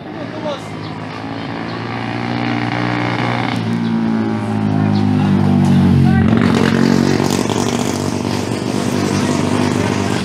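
Drag-racing underbone motorcycles (Suzuki Raider R150s) running flat out down the strip, their engine note building and loudest as they pass about six seconds in, then dropping in pitch as they move away.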